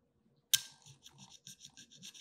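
A small blade scraping at the screen-printed logo on a glass candy-dispenser globe, starting sharply about half a second in and going on in quick short strokes, about six a second. The printing is stubborn and is not coming off.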